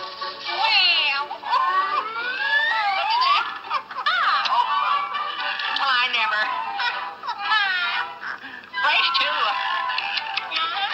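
Cartoon soundtrack music full of swooping, whistle-like pitch slides that rise and fall as the machine works, mixed with giggling.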